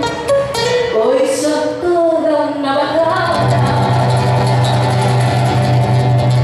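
A woman singing a slow, sliding melody over a nylon-string classical guitar in live performance. About halfway through she settles onto a long held note, with a steady low note sounding under it.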